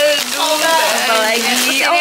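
Thin plastic shopping bag rustling and crinkling as it is rummaged through and snack packets are pulled out, with women's voices over it.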